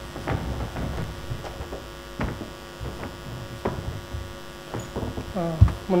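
Steady electrical mains hum through the hall's sound system, with scattered soft knocks and bumps at irregular intervals. A man's voice begins right at the end.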